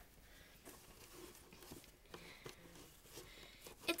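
Faint rustling of a cloth being unfolded and smoothed over a cardboard box, with a few soft handling taps.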